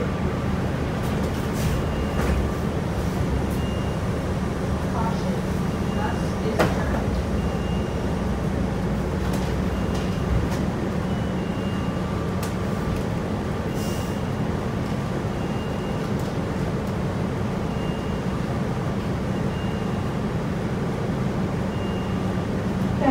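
Interior of a 2009 New Flyer DE40LF diesel-electric hybrid city bus in motion: its drivetrain runs with a steady low hum and a higher whine, amid cabin rattles and a few sharp knocks. Short high beeps recur every second or two.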